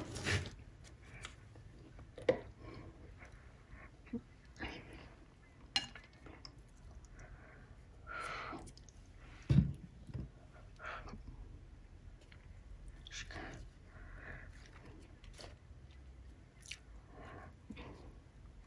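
Paper and aluminium foil being handled, rustling and crinkling in short scattered bursts, with light taps and one soft thump about halfway through.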